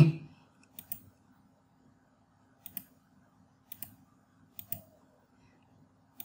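Faint computer mouse clicks, about four of them roughly a second apart, pressing keys on an on-screen Casio calculator emulator.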